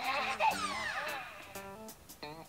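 Hatchimals WOW Llalacorn interactive toy's electronic voice warbling up and down during the first second or so as its head is stroked, over light plucked-guitar music.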